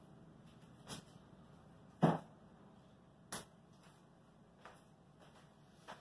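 A knife cutting through a plastic toilet-bowl block holder: five short sharp knocks, about one every second and a quarter, the loudest about two seconds in.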